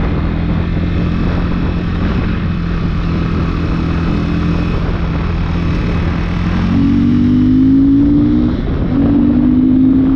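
Motorcycle engine heard on board while riding: a steady drone, then revving up about two-thirds in, a short break, and rising again near the end as it accelerates.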